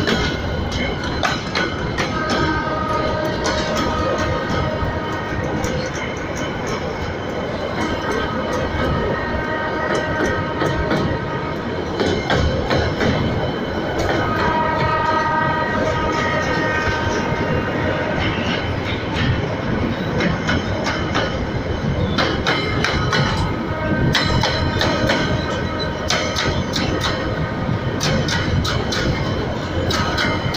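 Freight train of steel hopper wagons rolling past close by: a continuous rumble with wheels clacking over the rail joints. A steady high-pitched metallic tone rises and fades several times, the wheels squealing on the rails.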